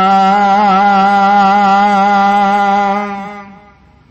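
A man's chanting voice holds one long, steady note at the end of a line of Gurbani, then fades out about three and a half seconds in.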